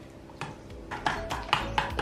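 Metal spoon stirring thick poppy seed paste and oil in a stainless steel bowl, clinking and scraping against the bowl several times from about half a second in.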